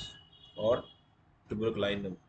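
Only speech: a man talking in Hindi, one short word and then a few more words after a pause.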